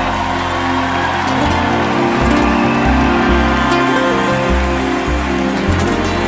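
Live band playing an instrumental passage between vocal lines: a bass line under sustained chords, with a hissing wash on top.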